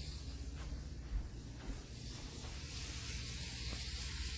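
Tomix N-scale Kintetsu 50000 Shimakaze model train running on its track: a steady hiss of wheel noise, fairly loud for this model, while the motor itself is really quiet.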